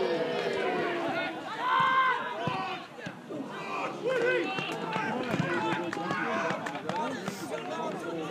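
Several men's voices shouting and calling over one another on a football pitch during a goalmouth scramble from a high ball into the box.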